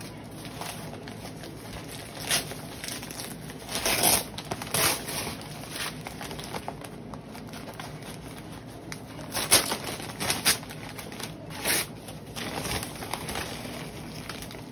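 Newspaper and plastic-bag packing being handled, rustling and crinkling in short irregular bursts.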